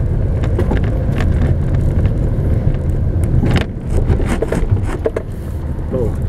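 A car being driven at low speed, heard from inside the cabin: a steady low engine and road rumble with scattered short knocks and rattles.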